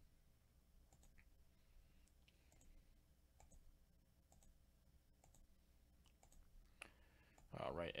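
Faint computer mouse clicks, scattered at irregular intervals, from a button being clicked again and again. A man's voice comes in near the end.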